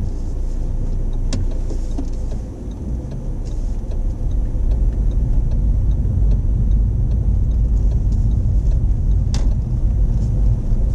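Car engine and road rumble heard from inside the cabin as the car is turned around and pulls away, dipping briefly and then growing louder a few seconds in as it gathers speed. A sharp click sounds near the end.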